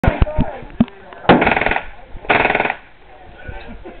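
5.56 mm M16 rifle firing on full automatic: a few sharp single cracks in the first second, then two short bursts of rapid fire about a second apart, each lasting about half a second.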